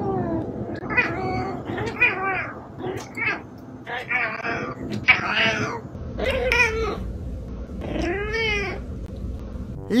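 Domestic tabby cat meowing over and over at a sleeping person to wake her: a string of drawn-out, speech-like meows about a second apart, each rising and falling in pitch, that read as 'Mooom' and 'come on'.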